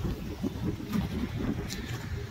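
Low uneven rumble of a Hummer H2's V8 pulling away on a wet street, mixed with wind buffeting and handling noise on the phone's microphone as it is swung round.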